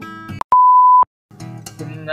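One steady high-pitched electronic beep, about half a second long, cutting in abruptly after the last notes of an acoustic guitar.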